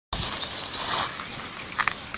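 Rustling footsteps through tall wet grass, with a few faint bird chirps.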